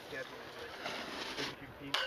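Snowboard sliding over snow, a steady scraping hiss that drops away about one and a half seconds in.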